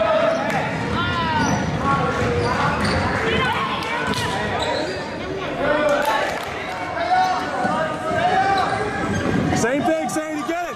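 Basketball game on a hardwood gym floor: the ball dribbling, many short sneaker squeaks, and players and spectators calling out, all echoing in the gym.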